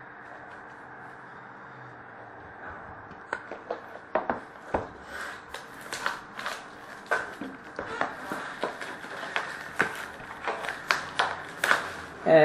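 Trading cards and their foil packs being handled and sorted by hand on a glass tabletop: after a few quiet seconds, a run of quick, irregular sharp clicks and scrapes, several a second.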